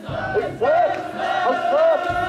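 Crowd of mikoshi bearers shouting a rhythmic carrying chant in unison as they shoulder the portable shrine, short rising-and-falling shouts repeated about every half second.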